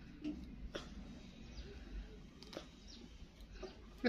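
Faint, scattered crackles and clicks of a wide-tooth comb being drawn through a toddler's coily 4c hair, over a low room hum.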